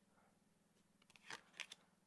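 Near silence, then a few faint taps and rustles of tarot cards being handled on a wooden table in the second half.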